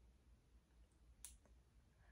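Near silence, broken once a little past a second in by a single faint click.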